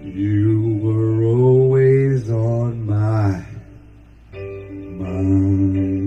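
A man humming a wordless melody into a handheld microphone over a karaoke backing track, between sung lines of the song. The voice breaks off for under a second a little past the middle, then the backing music carries on.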